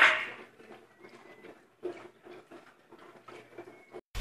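The fading end of a man's shout, then quiet room tone with faint scattered soft clicks and rustles and a thin, faint high tone.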